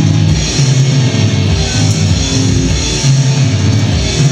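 Live rock band playing loudly with electric guitar, bass guitar and drum kit: an instrumental passage with a heavy, pulsing low end and no vocals.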